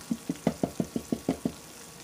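A quick run of about ten light taps, roughly seven a second, that stops about a second and a half in: a silicone candy mold being tapped against a silicone baking mat to loosen the gum paste bow inside before it is popped out.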